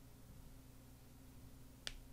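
Near silence with a faint steady low hum, broken by a single sharp click near the end.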